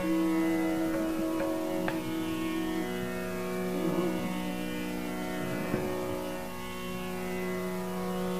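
Hindustani classical music in Raag Bageshree during a pause in the singing: a tanpura drone sounds steadily, with one held accompanying note for about the first three seconds and a few faint melodic touches later.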